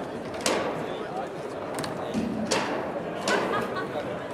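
Foosball play on an Ullrich Sport table: the ball is struck by the rod figures and the rods clack against the table, giving three or four sharp knocks, the loudest about half a second in. Voices murmur in the background.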